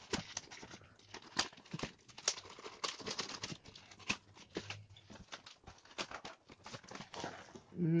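Plastic courier mailer being slit open with a utility knife and pulled apart: irregular crinkling, scraping and clicking of the packaging plastic.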